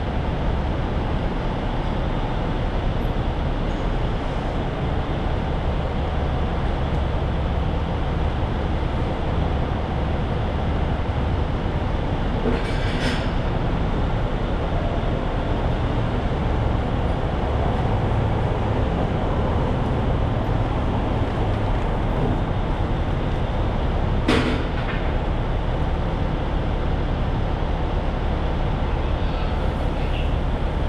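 Heavy machinery running steadily with a low rumble, typical of a diesel tanker truck and its pump working while loading oily water. Two brief sharp noises break through it, one about 13 seconds in and one about 24 seconds in.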